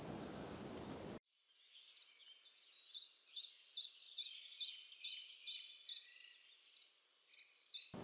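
Faint, high-pitched bird chirps: a quick run of short notes from about three to seven seconds in. Before that, a steady outdoor hiss cuts off suddenly about a second in.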